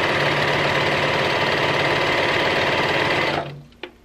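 Serger (overlock machine) running at a steady speed as it stitches a stretched neckband onto knit fabric, then stopping about three and a half seconds in, followed by a small click.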